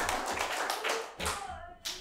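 Congregation applauding; the clapping fades out a little over a second in, leaving one or two last separate claps.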